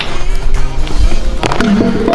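Background music over the rolling of a stunt scooter's wheels on stone pavement, with a sharp knock about one and a half seconds in.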